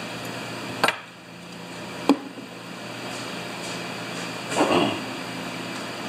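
Two sharp knocks of a small metal carburetor being handled and set down on a steel workbench, about a second apart, over a steady shop hum, followed by a brief scuffing rustle near the end.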